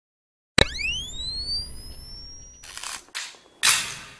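Camera flash charging: a sharp click, then a high electronic whine that rises in pitch and levels off. Three short noisy bursts follow near the end, the last the loudest.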